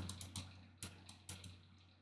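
A few faint, irregular clicks from a computer input device as a word is handwritten on an on-screen whiteboard.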